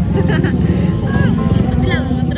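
A loud, steady low rumble of outdoor street noise, with a voice heard over it.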